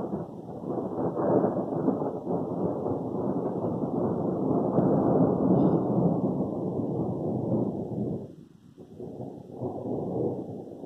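Thunder: a long, loud rolling rumble that sets in at once and dies away after about eight seconds, followed by a fainter rumble starting near the end.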